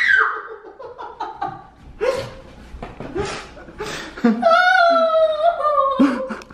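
Laughter in short bursts, then from about four seconds in a woman's long, drawn-out pained cry, her reaction to a hard wedgie.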